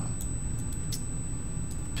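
Computer mouse buttons clicking several times, short sharp clicks over a steady low hum of microphone and room noise.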